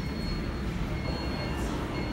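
Steady low rumble of background noise inside a large store, with a faint thin high whine running through it and no voices.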